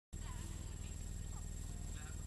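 Steady low electrical hum with hiss from a webcam microphone, with a few faint, short gliding sounds in the background.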